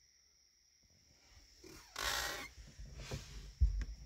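Near silence, then a short, noisy breath close to the microphone about two seconds in, followed by a few low thumps as the phone and body move.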